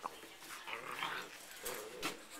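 Seven-week-old Afghan hound puppies making soft play noises, with short pitched calls about halfway through and near the end.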